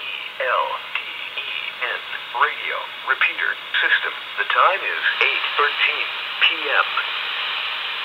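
Voice traffic on a GMRS repeater channel heard through a handheld two-way radio's speaker: thin, narrow-band speech over a steady hiss.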